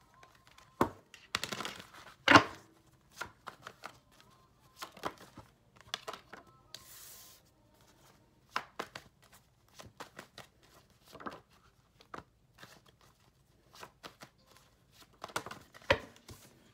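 Tarot cards being shuffled by hand: an irregular run of soft taps, flicks and knocks of the deck, with a brief soft rush of cards about seven seconds in and the sharpest knock about two seconds in.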